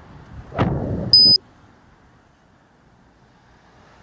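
A brief rumbling knock, then one short, high, steady electronic beep of about a quarter second that starts and stops abruptly, typical of a bike-mounted action camera being handled. Faint road and wind noise runs underneath.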